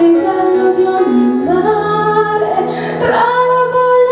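A woman singing an Italian pop ballad live into a handheld microphone over instrumental backing, holding a long note near the end.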